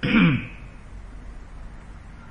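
A man clearing his throat once, a short rough sound falling in pitch, right at the start.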